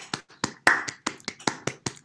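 Hands clapping in brief applause: sharp, separate claps, about five a second, heard over a video-call microphone.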